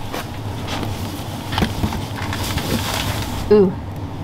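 Steady low hum of shop background, with a few faint knocks and rustles as ripe plantains are sorted by hand in a cardboard box. A woman says "ooh" near the end.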